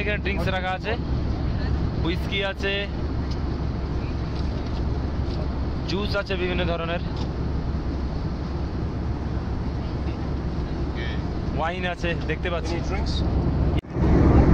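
Steady airliner cabin noise in flight: a constant low rumble of engine and air that does not let up.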